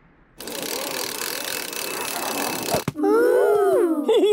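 Cartoon sound effect of a climbing safety rope paying out as a climber is lowered down it: a steady, noisy whirr lasting about two and a half seconds that stops suddenly. A man's voice starts near the end.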